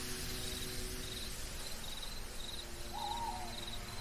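A night ambience sound-effect bed: crickets chirping in a steady rhythm of about two chirps a second over a low steady drone, with a single short owl hoot about three seconds in.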